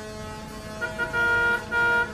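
Vehicle horn honking in a traffic jam: two short toots, then two longer blasts, over a steady drone of idling traffic.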